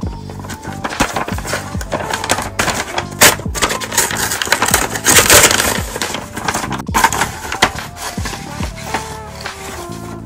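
Background music with a steady beat, over the crackling rip of a paper mailing envelope being torn open, loudest about five seconds in.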